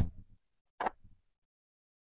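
Two sharp taps about a second apart as small hobby tools are set down and picked up on a desk: the first louder, with a low thud, the second lighter, with a few faint ticks after it.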